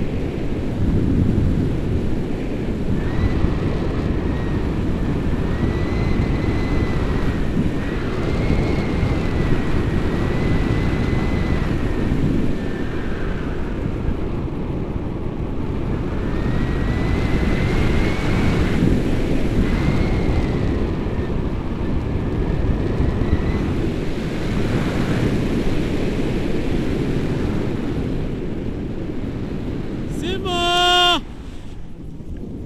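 Wind rushing and buffeting over the camera's microphone during a paragliding flight. A thin high whistle comes and goes several times, each time rising and falling gently in pitch.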